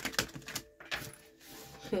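Tarot cards being shuffled and handled, an irregular run of quick card snaps and clicks, busiest in the first second.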